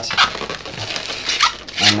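Inflated latex twisting balloons (260 size) rubbing and squeaking as they are twisted and pushed together, with two short squeaks, one just after the start and one past the middle.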